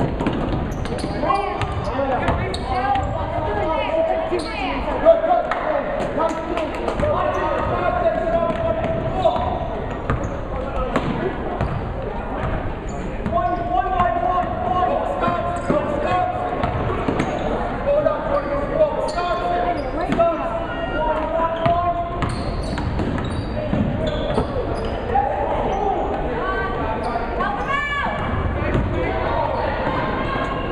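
Basketball dribbled on a hardwood gym floor during live game play, the bounces echoing in the gym, under a steady wash of voices from players and spectators.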